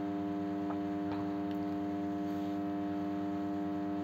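Steady sustained drone of the accompanying devotional music, one held chord that stays at an even level with no singing over it.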